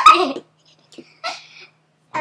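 Girls' high-pitched laughing and squealing in a short loud burst at the start, then a brief fainter squeal a little over a second in.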